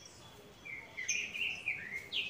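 A small bird chirping outdoors: a quick run of short, high chirps with little downward slides, starting about half a second in.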